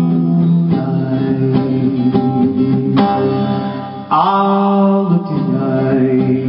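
Acoustic guitar strummed through an instrumental break of a slow song. About four seconds in, a brighter held note comes in sharply and lasts about a second.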